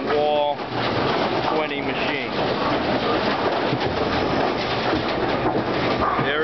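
AMF 82-30 pinspotter machinery running: a steady, dense mechanical clatter and rattle. A short pitched call-like sound cuts through near the start and again about two seconds in.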